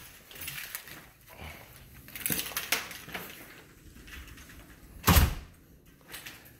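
Quiet footsteps and light knocks of someone walking through a house, then one loud thump about five seconds in.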